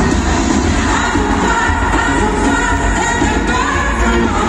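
Live pop music over a stadium sound system: a woman singing into a microphone with a band, as heard from the stands.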